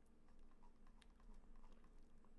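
Near silence: room tone with a few faint, scattered clicks from working a computer.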